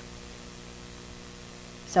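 A steady electrical hum made of several low tones stacked together, with a faint hiss beneath it.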